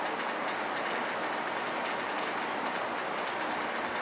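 Steady, even background hiss with no other distinct sound: the room's noise floor.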